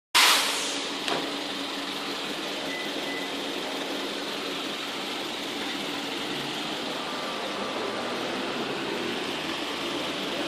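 Steady background hiss of room noise, with a brief bump at the very start and a faint click about a second in.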